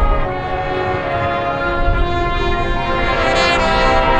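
Marching band brass and winds holding sustained chords, swelling a little louder near the end.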